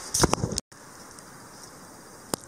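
A few short knocks and rustles of handling in the first half second as the wooden folding rule comes up out of the snow. After a sudden cut, a steady faint outdoor hiss of wind.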